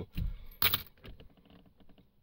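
A handful of coins, pennies, clinking in a hand: a soft thump, one sharp metallic clink a little over half a second in, then a few faint small clicks.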